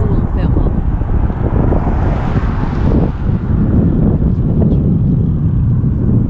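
Heavy wind buffeting the microphone on a moving bicycle, with a swelling whoosh about two seconds in from a car passing on the road.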